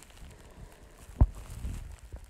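Low rumble on a ferry's car deck as the vehicle ramp is being raised, with a single dull thump just over a second in.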